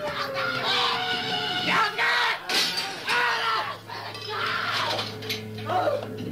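Loud shouting and yelling voices in short, choppy bursts. A low steady drone comes in a little past halfway.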